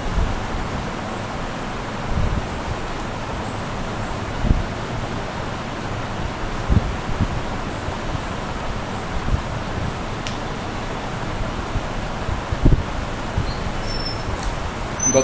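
Steady background hiss of room noise, broken by a few short low thumps.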